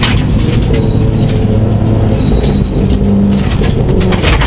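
Subaru WRX STI rally car's turbocharged flat-four engine, heard loudly from inside the cabin along with gravel and tyre noise, running at speed on a dirt road. The driver then comes off the throttle and brakes, and the engine note changes about two and a half seconds in.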